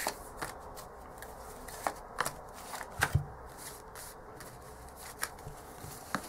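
Tarot cards being handled and laid down on a cloth-covered table: scattered light clicks and slaps of card stock, with a cluster of sharper snaps about two to three seconds in.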